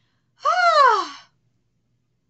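A woman's single wordless, voiced sigh of delight, under a second long, its pitch rising and then falling away.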